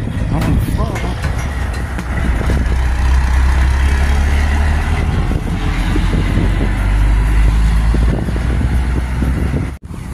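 Low, steady engine rumble that grows louder through the middle and stops abruptly near the end, with faint voices near the start.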